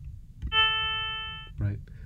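An additive-synthesis note from a Max/MSP patch: a 440 Hz sine fundamental with overtones at whole-number multiples, all at the same volume. It starts sharply about half a second in and dies away over about a second, shaped by its ADSR envelope.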